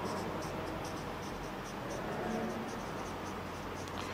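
Marker pen writing on a whiteboard, a quick run of short strokes scratching across the board surface.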